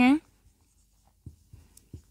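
Marker pen writing on a whiteboard: a few faint short strokes in the second half.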